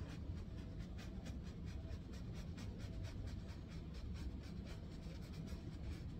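A paintbrush stroking on a canvas in quick short strokes, several a second, with a brief pause near the end, over a faint steady low hum.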